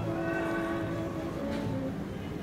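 Big band jazz music: the horn section holds long sustained chords, moving to a new chord about halfway through.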